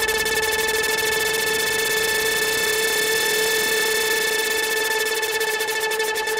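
Progressive psytrance breakdown: a held synthesizer tone with a slight pitch bend in the middle, the driving beat dropping out shortly after the start and coming back near the end.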